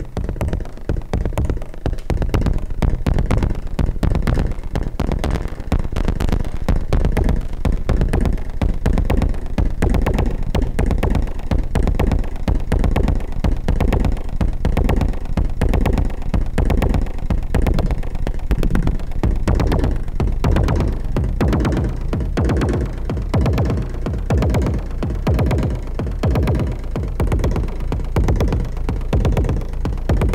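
Make Noise MATHS modular synthesizer patch playing a sequenced electronic drum pattern: fast, clicky synthesized hits over a steady, heavy low bass line, the bass plausibly taken as a square wave from MATHS' end-of-cycle output.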